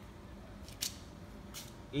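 Two brief, high scratchy strokes about three-quarters of a second apart, typical of writing on a board; a man's voice starts just at the end.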